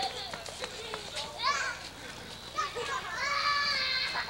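Children shouting and calling out while playing outdoors: a short high rising shout about a second and a half in, then a longer, held high-pitched yell near the end.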